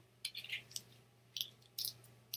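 A few faint, brief rustles and clicks from handling a paper sticky note: a small cluster early on, then two single ones near the end.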